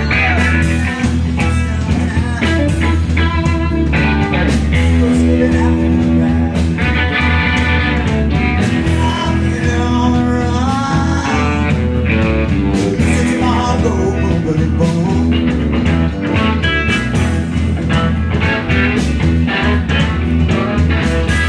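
Live rock-and-roll band playing loudly: electric guitar over drums, with a steady driving beat.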